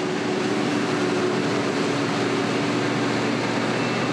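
Krone BiG X 770 forage harvester running at work in maize, a steady, constant purr of engine and chopping machinery with an unchanging hum. The evenness of the purr is the sign of a constant flow of crop through the machine, from the pre-compression rollers to the crop accelerator.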